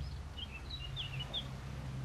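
A small bird chirping: a handful of short, high chirps in quick succession in the first half, over a faint, steady low outdoor background hum.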